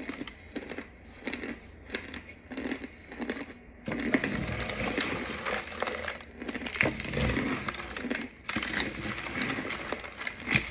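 Clumps of crunchy white powder crunching in short bursts about twice a second. About four seconds in, it turns to a louder, steadier crackling and scraping as gloved hands scoop the powder into a clear plastic jar over paper.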